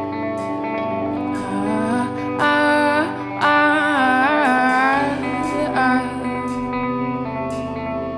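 Indie rock band playing an instrumental passage: electric guitars over drums with regular cymbal strokes. In the middle, a held melody line rises and bends in pitch.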